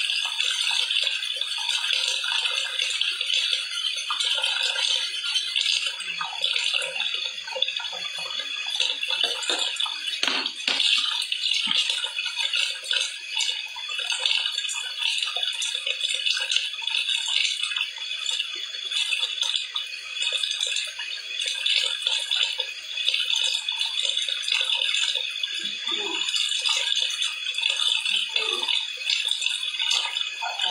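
Water running steadily from a kitchen tap, a continuous hiss, with small clinks and a knock about ten seconds in.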